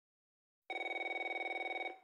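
Video-call ringing tone: one fast-warbling electronic ring, about a second long, starting just under a second in.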